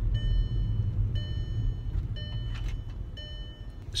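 Steady low road-and-engine rumble inside a car cabin, with a high steady tone sounding four times, each for under a second, about once a second.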